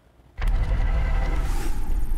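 A news broadcast's transition sound effect under a "The Latest" graphic: a steady rumbling whoosh that starts suddenly after a brief silence, with a rising sweep near the end.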